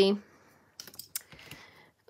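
A few light clicks and taps of long artificial nails against a nail tip on its holder and the hard worktop, with one sharper click about a second in.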